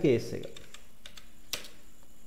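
A voice finishes a word at the very start. Then a few scattered computer keyboard keystrokes click, the clearest about one and a half seconds in.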